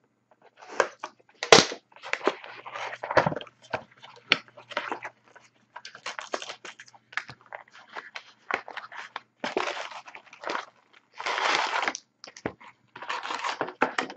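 Plastic shrink-wrap being torn off a sealed trading-card box and crumpled, then the cardboard box being opened and its card packs handled: a run of irregular crinkling, crackling rustles, with the loudest bursts about a second and a half in and around eleven seconds in.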